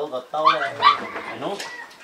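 People talking, with two short high-pitched rising yelps about half a second and a second in.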